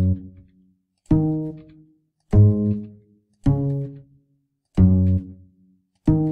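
Single low bass notes played back one at a time by Sibelius notation software as each note in the bass part is selected and edited. There are four notes about a second apart, each plucked and quickly dying away.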